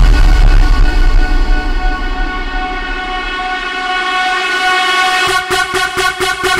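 Electronic dance music breakdown over a club sound system. The bass and beat drop away, leaving a held synth chord whose top end is gradually filtered down, and a fast pulsing rhythm cuts back in near the end.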